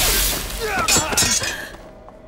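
A loud shattering crash, a dubbed fight sound effect, that fades out after about a second and a half.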